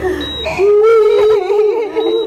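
A woman's voice wailing in distress: one long wavering cry that starts about half a second in. Under it runs a thin, high, steady electronic tone.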